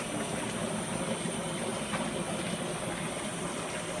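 Steady rush of a kitchen faucet running hot water into a pot of dry ice, with the dry ice bubbling in the water as it sublimates.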